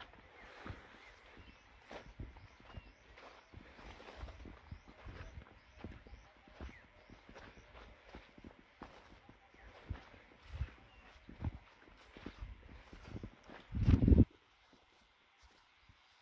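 Footsteps of people walking in sandals over a dry dirt path and brushing through bush, irregular soft thuds and scuffs. About 14 s in there is a loud low thump lasting about half a second, and after it the sound falls quieter.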